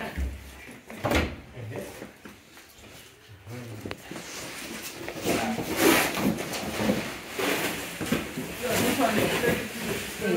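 Indistinct voices talking, with a dull thump at the start and a knock about a second in, like furniture or the camera being handled.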